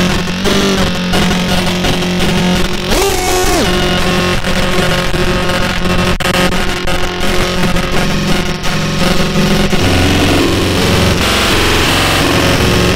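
Circuit-bent Korg Kaoss Pad effects unit mangling a drum machine's output into loud, dense glitchy noise and droning tones. About three seconds in, a pitch glides up briefly and drops back down.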